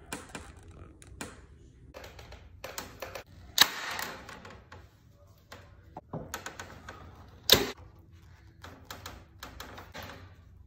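Corded electric staple gun firing twice into a wooden frame, the two loud shots about four seconds apart, with lighter clicks and knocks of handling around them.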